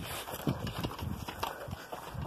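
Running footsteps, a quick uneven thudding of about three steps a second, with the phone being jostled as it is carried at a run.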